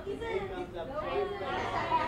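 Background chatter: several people talking at once, fainter than the nearby interview voice.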